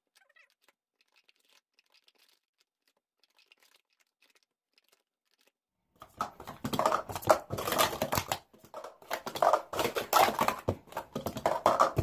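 Plastic speed-stacking cups clacking in a fast run as they are stacked up and down on a pile of stacking mats, starting about halfway through after several seconds of near silence with only faint ticks.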